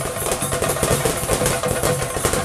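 Fast, dense ritual drumming of the kind played on chenda drums to accompany a theyyam, with a steady sustained tone running beneath the strokes.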